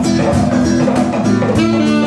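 Live band music led by a strummed acoustic guitar, with a steady beat of about four strokes a second.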